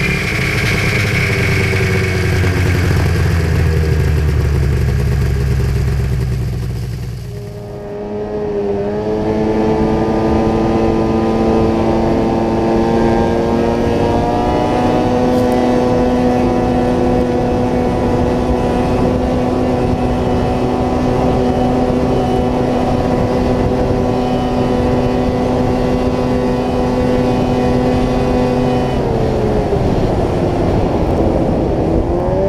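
2001 Ski-Doo Summit 800's two-stroke twin running hard, a deep rumble for the first several seconds. After a brief dip, a steady engine note climbs twice, holds high for a long stretch, and falls away near the end as the sled slows.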